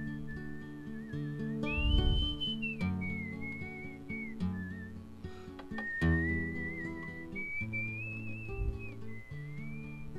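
A whistled melody, one thin wavering line that glides up and down, played over strummed acoustic guitar chords, with a few louder strums about two and six seconds in.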